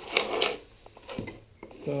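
Light wooden clicks and knocks, with a brief scrape, as IKEA Lillabo wooden train track pieces and toy train cars are handled and set down on a floor. A voice starts near the end.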